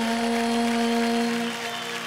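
A girl's solo singing voice holding one long, level note at the close of an Indian classical vocal phrase, fading near the end.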